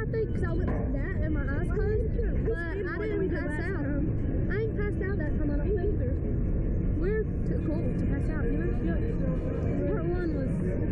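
Girls' voices talking indistinctly and intermittently over a steady low rumble.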